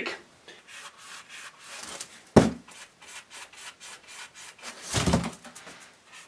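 Paintbrush strokes brushing thick rubberized roof sealer onto foam and 3D-printed plastic tail sections: a run of short, scratchy strokes. A sharp knock comes about two and a half seconds in, and a heavier thump near the end.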